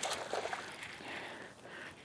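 Faint, steady outdoor noise of wind and choppy lake water around a fishing boat, fading slightly over the two seconds.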